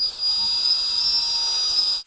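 Cordless drill-driver running at speed, driving a screw into the wooden frame: a steady high-pitched motor whine with a hiss.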